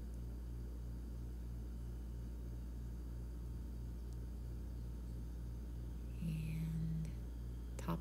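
A steady low background hum with a faint even pulsing, and a short held vocal hum from a woman about six seconds in.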